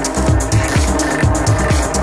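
Progressive house DJ mix playing at full level: a steady four-on-the-floor kick drum, about two beats a second, under hi-hats and sustained synth tones.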